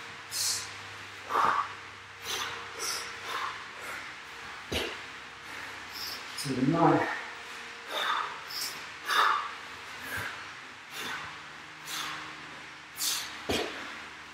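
A man breathing hard after burpees: short, forceful breaths about one a second, with a brief voiced sound about halfway through.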